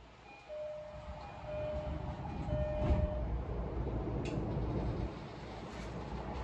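Door chime of a JR East E233-series commuter train sounding a high-low two-tone signal three times. A knock follows, typical of the doors shutting. The train's low running noise then builds as it starts to pull out of the station.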